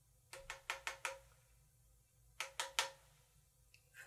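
A makeup brush tapped against the hard edge of an eyeshadow palette to knock off excess powder: five quick taps, then three more about a second and a half later.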